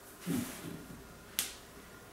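A single sharp click about a second and a half in, after a faint short low sound; otherwise a quiet room.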